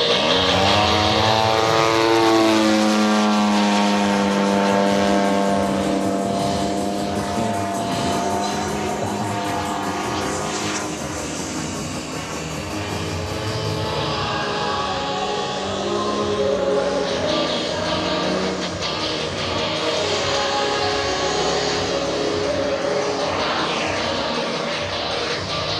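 Radio-controlled model aircraft engine flying past overhead: its drone falls in pitch over the first couple of seconds as it passes, then holds a steady note. Music plays underneath.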